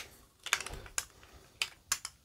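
Thick poker-chip-style game tokens clicking against each other and a clear plastic tube as they are handled: five or six sharp, separate clicks at irregular intervals.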